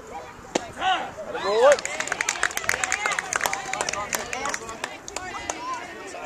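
A single sharp smack about half a second in, then voices shouting, then a couple of seconds of quick, dense hand clapping mixed with more calls.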